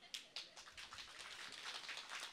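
Faint, sparse audience clapping over low background noise, a few separate claps near the start and then a soft patter that slowly grows.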